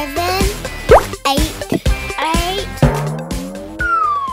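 Playful children's music with cartoon sound effects. Quick rising plops come about a second in and again near the end, among squeaky gliding tones, and a long falling glide starts just before the end.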